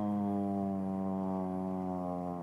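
A man's voice holding one long, low, buzzing hum whose pitch slides slowly downward.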